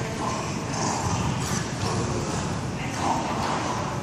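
An adult Staffordshire Bull Terrier and his puppy growling steadily as they play tug of war, with paws scuffling on a rubber floor mat.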